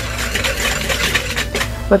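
Wire whisk stirring dry flour mixture in a mixing bowl: rapid, continuous scratchy ticking as the wires scrape through the flour and against the bowl.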